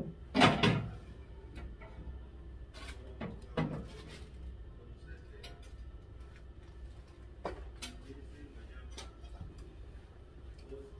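Scattered clicks and light knocks as the fittings of a glass display cabinet are handled while lighting is installed, a few separate taps over several seconds in an otherwise quiet room, with a sharper knock near the start.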